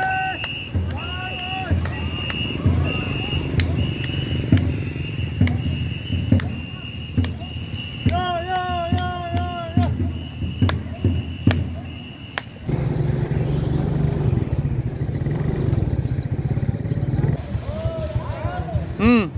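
Ngo longboat crew paddling in rhythm: sharp paddle knocks and splashes with each stroke, crew calls, and a high tone repeated in short pulses that keeps the stroke. About two-thirds of the way through, the sound cuts abruptly to a steady low rumble.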